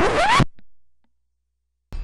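A short, harsh edited-in sound effect: a noisy burst with a rising pitch, under half a second long, then dead silence for most of the rest.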